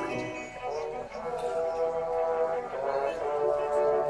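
Live symphony orchestra, strings and brass, playing a classical piece in a softer passage of held notes.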